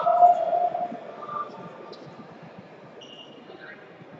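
A person's loud, drawn-out call that fades out about a second in, followed by the low hubbub of a crowded sports hall.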